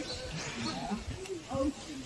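Indistinct voices talking in the background, with a few faint high chirps in the first second.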